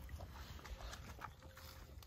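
A puppy lapping water from a small muddy pool, heard as faint, irregular wet clicks.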